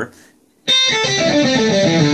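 Electric guitar through a tight, high-gain distortion and a pitch shifter set seven frets (a fifth) above, so each note sounds as two. It is picked hard about two thirds of a second in and plays a short phrase of sustained notes that runs on past the end.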